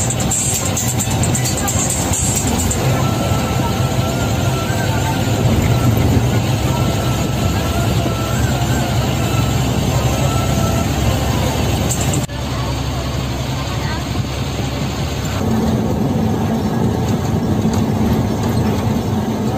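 Ashok Leyland bus engine running at cruising speed with road noise inside the cabin, mixed with a song with a singing voice. The sound changes abruptly about twelve seconds in.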